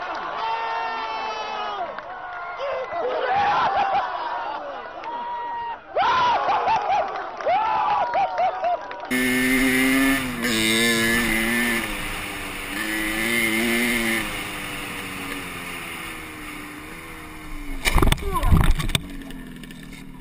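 Voices shouting and calling out over an outdoor football pitch. About nine seconds in, a dirt bike's engine takes over, heard from the rider's helmet camera, its pitch rising and falling with the throttle. Near the end there are a few loud thuds and scrapes as the bike crashes into the sand.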